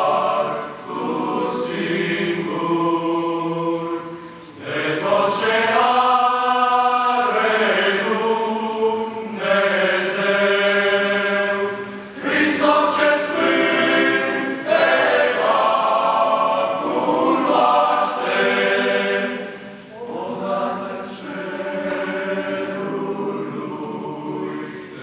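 Young men's choir singing a hymn a cappella in parts, held chords in phrases of about eight seconds with short breaks between them.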